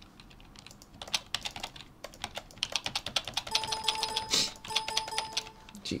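Computer keyboard keys tapped rapidly and repeatedly, typical of hitting a shortcut key to add frames to an animation timeline. In the second half, a steady electronic tone sounds twice, about a second each time, over the key clicks: an unintended sound that shouldn't be coming through.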